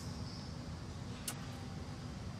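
Quiet room tone: a steady low hum with one faint click a little past halfway.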